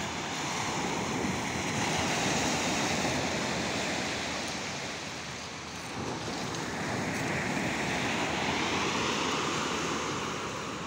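Sea surf washing onto the beach, a steady rush that swells and eases with each set of waves, about every five or six seconds.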